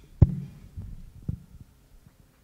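Microphone handling noise: low thumps and rumble, the loudest thump about a quarter second in and a weaker one just past the middle.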